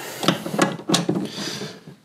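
Hands and a tool working under a vehicle's third-row seat to reach a seat-bracket bolt: several light clicks and knocks on the plastic and metal seat hardware over a rustle of handling.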